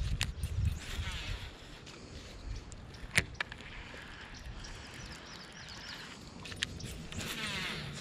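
Baitcasting reel being cranked to retrieve line after a cast: a faint, even gear whir with a few sharp clicks, the loudest about three seconds in. A low rumble sits under the first second.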